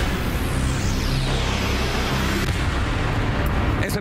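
Broadcast transition sound effect: a sharp hit, then a falling whoosh that sweeps down over about two and a half seconds, over a steady low music bed.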